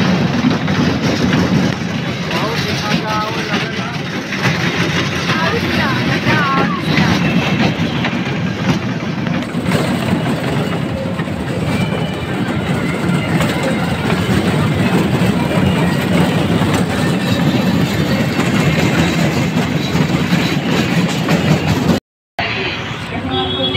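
Park toy train running along its narrow-gauge track, a steady low rumble with voices over it.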